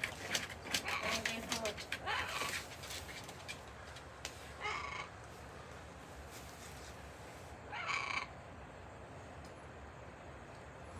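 Pet parrot giving two harsh squawks, one about five seconds in and a louder one about eight seconds in. Before them, in the first couple of seconds, a plastic bag rustles and crinkles with small clicks.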